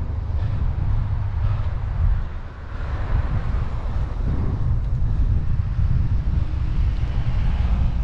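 Wind rumbling on the microphone of a moving bicycle, with the steady noise of road traffic running alongside. It dips briefly a couple of seconds in.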